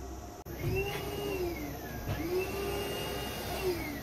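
Vacuum cleaner motor running, starting about half a second in, its pitch dropping and rising again twice.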